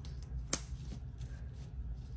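Magnetic ruler of a Ranger Make Art Stay-tion clicking down once onto the magnetized work mat about half a second in, with faint handling rustle of the ruler and mat around it.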